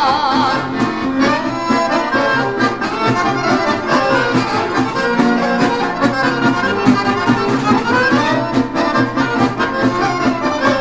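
Accordion-led folk band playing an instrumental passage over a steady bass and rhythm, with a rising accordion run about eight seconds in.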